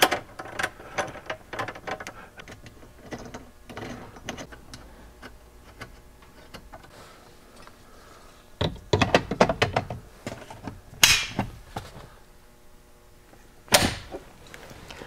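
Small metal clicks and scrapes as an Allen key drives screws into an aluminium quick-release bracket. Later comes a run of knocks, then a loud sharp metal clack at about 11 seconds and another near the end, as a fire extinguisher is set into the mount.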